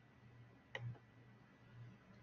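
Near silence over a faint low hum, with one short click a little under a second in.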